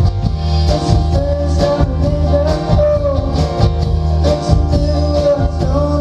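A live band playing a song: strummed acoustic guitar with electric guitar, a low bass part and a steady percussion beat, under a sung vocal line.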